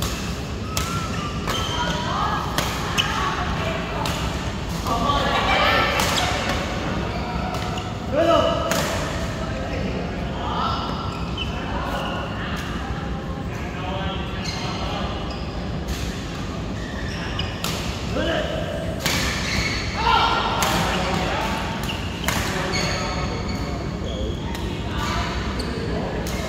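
Badminton rally: sharp racket strikes on a shuttlecock at irregular intervals, with players' voices and footwork, echoing in a large indoor hall.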